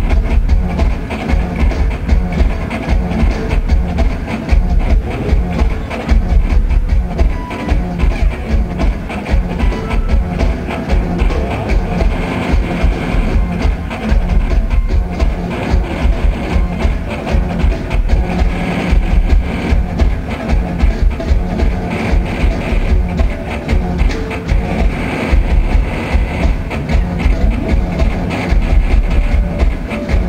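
Math-rock band playing live: a drum kit keeping a steady, driving beat under electric guitars, loud and heavy in the bass.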